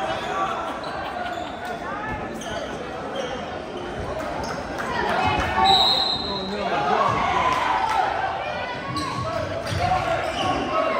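A basketball bouncing on a hardwood gym floor amid spectators' voices, with a short, steady whistle blast about six seconds in.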